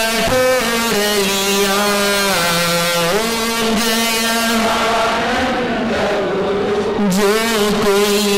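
A man's voice singing a Hindi devotional song, drawing out long held notes that slide slowly from pitch to pitch.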